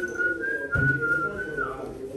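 A person whistling one long held note that steps slightly up and then down before trailing off, over low murmuring voices. A low bump sounds a little under a second in.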